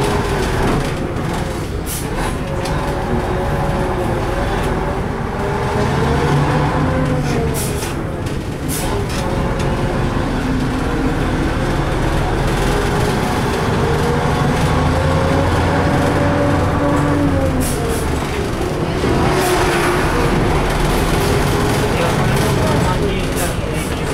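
LAZ-695T driving, heard from the front of its cabin: a steady running rumble with a motor tone that rises as the vehicle speeds up and falls back, twice. A few short knocks come through as it goes.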